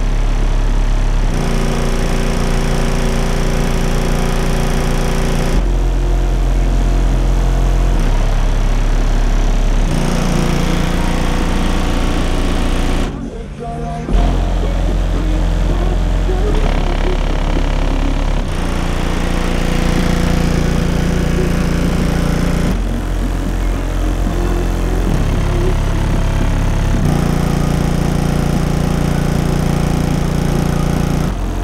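Loud bass-heavy music played through three 18-inch Resilient Sounds Platinum subwoofers walled in a small car, in a ported box tuned to 28 Hz. Deep held bass notes shift every few seconds, with a brief break about thirteen seconds in.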